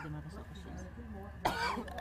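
Faint murmured men's voices over a steady low hum. About one and a half seconds in, a man's voice breaks in with a sudden loud burst, cough-like at its onset.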